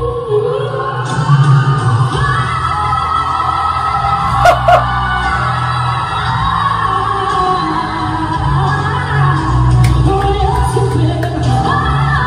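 Female pop singer in live performance holding one long, very high sung note over a backing track, pushing into the whistle register at the song's climax.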